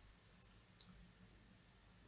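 Near silence: room tone, with one brief faint click just under a second in.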